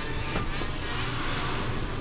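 Horror-film sound effect of a house shaking as spirits burst from a television: a steady rushing rumble that starts abruptly.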